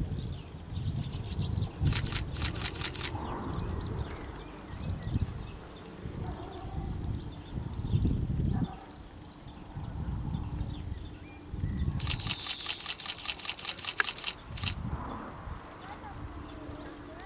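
Two bursts of rapid camera shutter clicks, about six a second and each lasting a little over a second, one early and one about twelve seconds in, from a camera shooting in continuous mode. Small birds chirp between them over an uneven low rumble.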